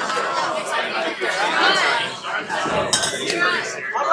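Several people talking at once in overlapping conversation, with one sharp clink a little before three seconds in.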